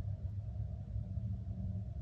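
A steady low background hum, with no other sound standing out.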